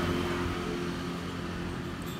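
Low rumble of motor-vehicle engine noise from traffic, with a steady engine hum that fades out early on, leaving a softer rumble.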